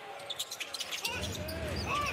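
Live basketball court sound: sneakers squeaking and the ball bouncing on the hardwood, over arena crowd noise that swells about a second in.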